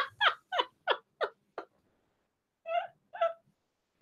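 A woman laughing hard: a run of short laugh pulses, each falling in pitch, about three a second, that fade out in the first two seconds. Two more breathy laugh bursts follow near the end.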